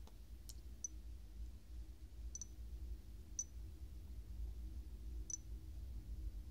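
A handful of faint, sharp clicks at irregular intervals as fingers tap and navigate the touchscreens of two smartphones, over a low steady room hum.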